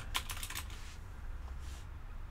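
Typing on a computer keyboard: a quick run of keystrokes in the first half second or so, then a few scattered taps, over a low steady hum.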